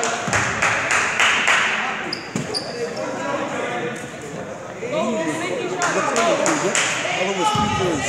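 Basketball being dribbled on a hardwood gym floor, a series of knocks, with two short high sneaker squeaks a little after two seconds. Shouting voices from players and spectators run through it, most plainly in the second half.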